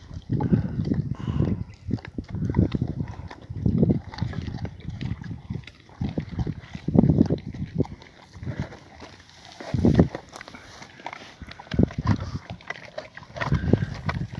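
Dogs gnawing and crunching raw wild boar bones, with many sharp clicks of teeth on bone and repeated low bursts of sound every second or two.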